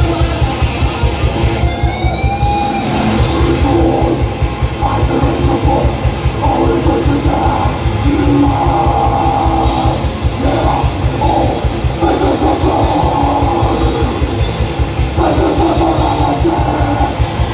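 Death metal band playing live, loud as heard from the audience: distorted electric guitar and bass over fast, dense drumming, with no vocals in this stretch.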